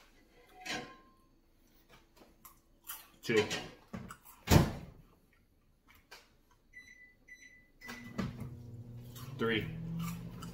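Microwave oven keypad beeping three short times, then the oven starting up with a steady hum near the end.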